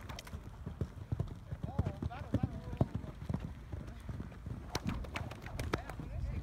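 Hoofbeats of a KWPN mare and foal trotting on a sand arena, an uneven run of dull strikes, with a handler's footsteps running alongside. A short wavering call sounds about two seconds in.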